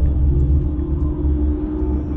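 Film sound effect of a deep, continuous earth rumble, with a steady low drone held over it.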